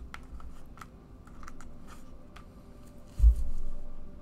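Tarot cards being handled close to a microphone: a string of light, sharp clicks and card snaps, then a dull thump a little past three seconds in.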